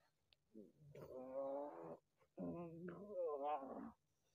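A person's wordless moaning: two drawn-out, wavering cries, the second starting about halfway through.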